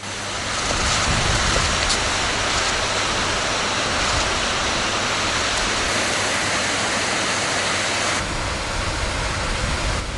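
Fountain water falling and splashing: a steady rushing hiss that holds at one level, thinning slightly in its highest part about eight seconds in.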